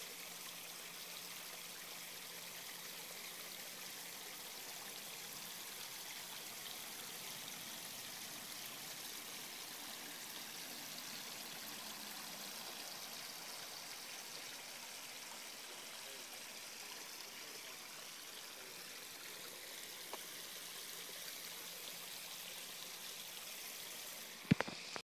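Steady trickle of running water in a small garden fish pond.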